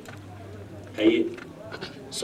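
A lull with a low steady hum, broken about a second in by one short vocal sound, with faint fragments of voice near the end.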